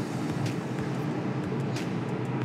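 A sportfishing boat's twin inboard engines idling at low speed while they are shifted between gear and neutral for docking, a steady low rumble.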